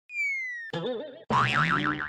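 Cartoon-style sound effects: a short falling whistle, then tones that wobble up and down in pitch, louder in the second half.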